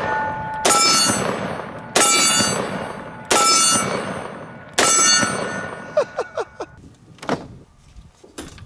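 Smith & Wesson 500 Magnum snub-nose revolver with a 3.5-inch barrel fired one-handed, four shots about a second and a half apart. Each shot is followed by a steel target ringing as it fades.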